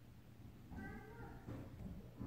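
A faint, short animal call, meow-like, about three-quarters of a second in, over a low steady hum.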